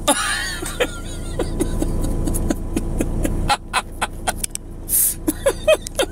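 A man laughing softly in short chuckles over a steady low hum.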